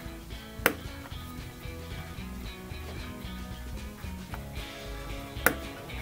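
Background music, with two sharp clicks of a chisel blade cutting photo-etched brass parts free of their fret, the first under a second in and the second about five seconds later.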